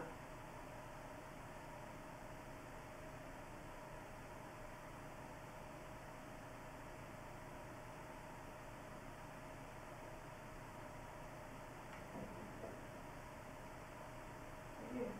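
Faint steady hiss with a thin steady hum underneath, the background noise of a quiet room recording; two faint brief sounds about twelve seconds in.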